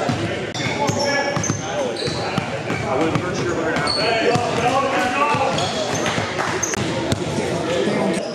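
Basketball game sounds: the ball bouncing and sneakers giving many short, high squeaks on the court floor, over steady voices of players and onlookers talking and shouting.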